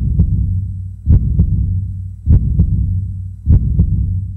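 Heartbeat sound effect: four double beats, about 1.2 seconds apart, over a steady low hum.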